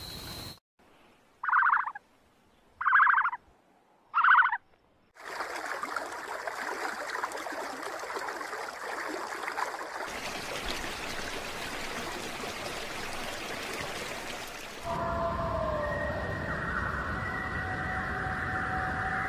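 Three short, loud animal calls about a second and a half apart against near silence, then a long stretch of steady watery noise; near the end, several held pitched tones come in over the noise.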